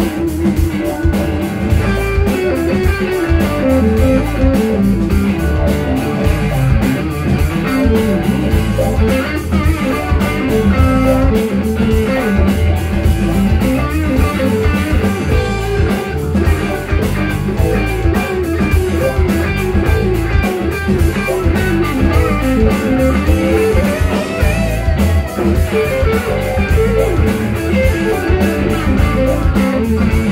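Live rock band playing: electric guitars over bass guitar, drums and electric keyboard, with a steady beat.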